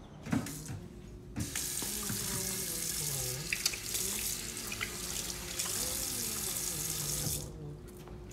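Kitchen faucet running into a stainless steel sink while hands are rinsed under the stream. The water comes on about a second and a half in and is shut off near the end.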